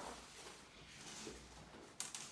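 Near silence: faint room tone in a small room.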